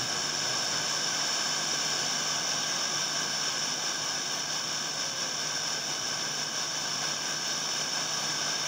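Steady FM receiver hiss from a tuner set to 95.1 MHz, with no programme audible: the distant station, received over an unstable tropospheric path, has faded into the noise.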